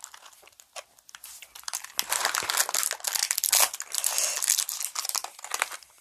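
Shiny plastic candy wrappers crinkling as they are unwrapped by hand: a few light crackles at first, then dense, continuous crinkling from about two seconds in.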